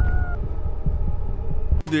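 Low rumbling, the tail of a crash sound effect of something bursting through a house wall, with a faint high tone fading out in the first half-second. It cuts off suddenly just before the end.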